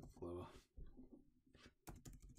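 Near silence with room tone after a short spoken word at the start, and a single sharp click near the end.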